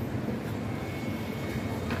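Steady low rumble of street background noise, with no distinct events.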